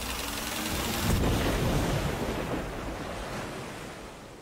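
Stormy sea: a steady rush of wind and breaking waves that swells about a second in, then slowly fades.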